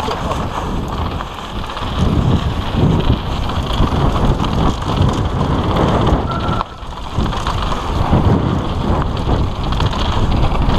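Wind buffeting an action camera's microphone on a fast downhill mountain bike run, over the rumble of tyres rolling on a packed dirt trail. The level surges and dips as the bike moves through the turns.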